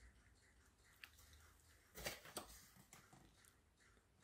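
Near silence, with a few brief soft rustles and clicks about two seconds in: a cardboard cracker box being picked up and handled.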